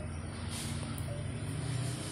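Steady low background hum and rumble with no distinct events.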